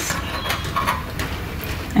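A few light, scattered metallic clicks and taps as a steel ruler, silver wire and side-cutter pliers are handled against a metal bench block, over a low steady hum.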